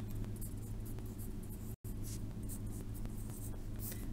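Pencil scratching on lined notebook paper in short irregular strokes as a limit expression is written out, over a steady low hum. The sound cuts out for an instant about halfway through.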